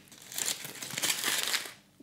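Foil wrapper on a chocolate Easter egg crinkling as it is peeled open by hand, dying away shortly before the end.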